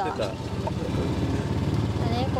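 Golf cart running steadily as it drives along, a low even engine drone.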